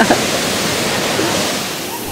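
Steady rush of water pouring over a dam weir, with faint voices underneath.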